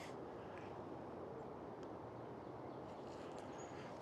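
Faint outdoor ambience: a low steady hiss with a few faint ticks and one brief high chirp about three and a half seconds in.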